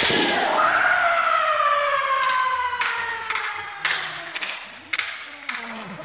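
Kendo kiai: after a sharp strike at the start, a fighter's long drawn-out shout that slowly falls in pitch over about four seconds. Several sharp knocks sound through the middle and end.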